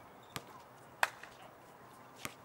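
Two sharp knocks from a basketball in play on an outdoor court, about two-thirds of a second apart, the second one louder.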